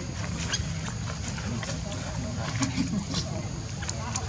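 Faint indistinct human voices over a steady low rumble, with scattered sharp clicks.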